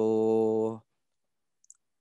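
A man's voice holding a drawn-out hesitation sound ("so…") at a steady pitch for most of a second, then it cuts off into silence.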